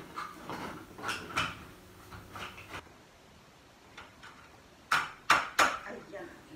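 Metal tubes and plastic connectors of a clothes rack being handled and fitted together: faint rattling at first, then three sharp knocks in quick succession near the end.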